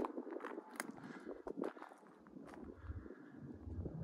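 Footsteps on loose gravel and dry dirt: a series of quiet, irregular crunching steps.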